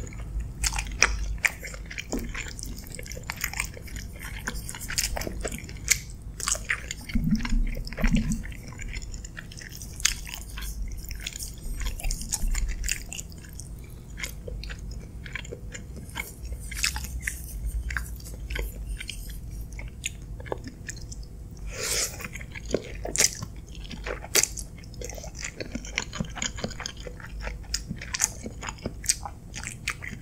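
Close-miked chewing and biting of creamy pasta with grilled chicken: many short, irregular mouth clicks and smacks.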